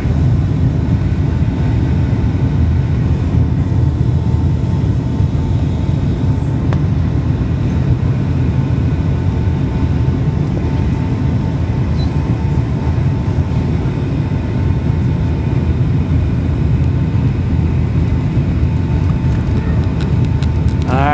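Steady cabin noise of a jet airliner on final approach, heard from inside the cabin: a constant low rumble of engines and rushing air, with a faint steady tone above it.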